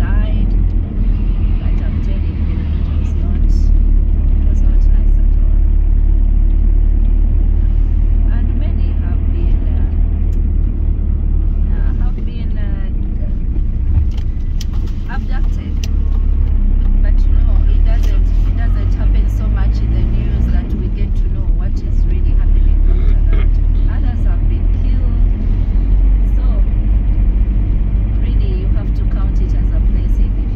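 A car being driven, heard from inside the cabin: a steady low rumble of engine and tyres on wet road, with faint voices now and then.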